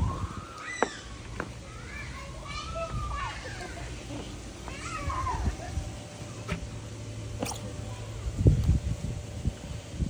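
Several high-pitched rising-and-falling voice calls in the background through the first half, then a few low rumbling thuds late on.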